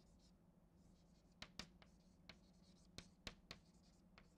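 Chalk writing on a chalkboard: faint, separate taps and scratches as a word is written, with a cluster of strokes in the second half.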